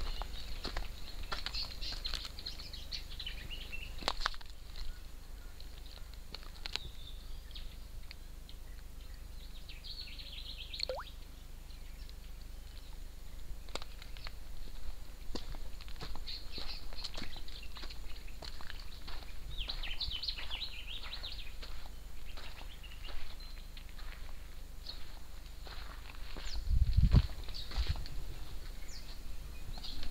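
Birds chirping and calling on and off in the bush, with scattered light clicks and a brief low rumble near the end.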